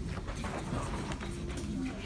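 Classroom background noise: children's low, indistinct voices with scattered light clicks and knocks from desks and pencils.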